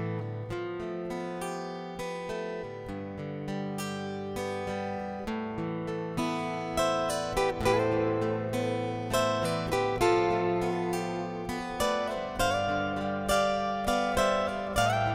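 Background music: a plucked acoustic guitar piece, a steady run of picked notes that grows louder about halfway through.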